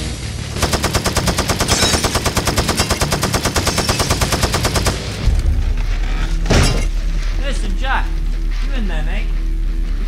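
A long burst of automatic gunfire, rapid evenly spaced shots for about four seconds. It gives way to a low, steady music drone, with a single sharp bang about a second and a half later.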